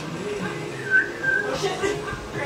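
A person whistling a few short, thin notes around the middle, the whistle hampered by a lip ring, over background music.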